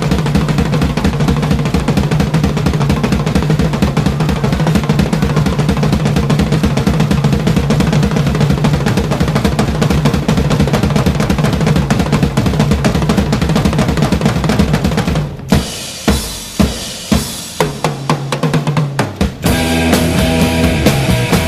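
Rock drum kit solo: a fast, continuous roll across toms and bass drums, then about three-quarters of the way through, a run of separate loud accented hits. Near the end the rest of the band comes back in.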